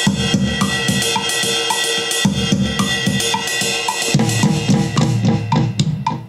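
GarageBand's Classic Studio Kit virtual drums playing back from an iPad: a steady cymbal wash with kick and snare hits, the drumming getting fuller about two seconds in and again near four seconds. A short high click repeats evenly about twice a second.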